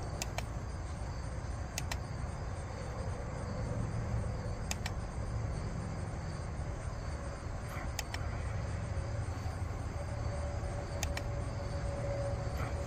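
Steady outdoor background noise with a few faint clicks a few seconds apart, the buttons of a handheld chronograph being pressed to page through its shot list. A faint steady tone comes in near the end.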